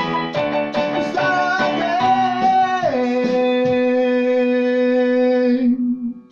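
Electronic keyboard playing the closing bars of a rock song: a quick run of notes, then a long held final chord that slides down in pitch about three seconds in and stops shortly before the end.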